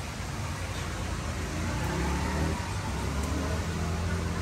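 Steady low background rumble, with faint, indistinct voice-like sounds partway through.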